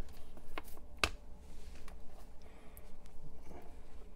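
Light handling sounds of a gloved hand on wires and parts on a bench: a few small clicks and ticks, the sharpest about a second in, over a faint low steady hum.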